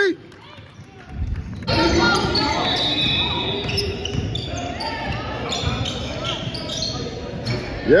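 Basketball game sounds echoing in a gym: a ball dribbling, sneakers squeaking on the hardwood and players' and spectators' voices. The sound is quieter for the first second or two, then becomes louder and busier.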